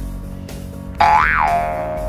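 Background music, with a cartoon "boing" sound effect coming in about a second in: a pitched twang that swoops up and back down, then holds.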